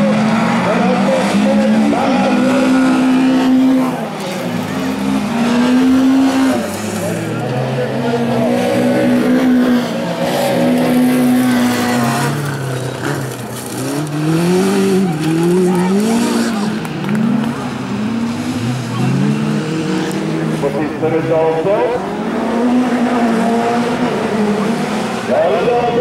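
Bilcross race car engines revving hard, their pitch climbing and dropping again and again through gear changes, with tyres skidding on loose gravel.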